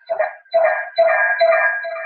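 A run of about five short, high-pitched sounds, each under half a second, coming in over a participant's open microphone on a video call.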